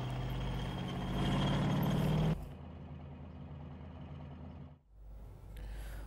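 Engine of a tracked self-propelled howitzer running steadily as the vehicle moves, a low even drone. About two seconds in it cuts abruptly to a quieter engine sound, which drops out for a moment near the end.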